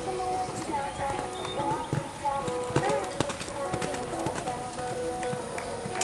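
A pony's hoofbeats as it moves across the sand arena, scattered and uneven, heard under steady background music and people talking.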